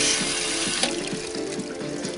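Water spray from the sensor-operated head of a stainless-steel hand and knife washer hissing onto a hand and into the steel basin, cutting off about a second in. Background music plays throughout.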